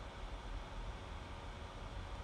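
Faint steady hiss of microphone room tone, with no distinct events.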